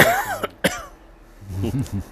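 A man clears his throat in a short, harsh burst at the start, followed by a click and a few words of male speech.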